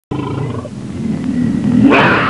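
A dragon roar sound effect: one long, loud roar that starts abruptly and grows louder and higher toward the end.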